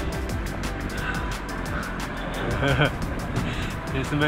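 Wind and tyre rumble on a GoPro during a mountain-bike ride over desert gravel, under background music, with a short burst of voice about two-thirds of the way through.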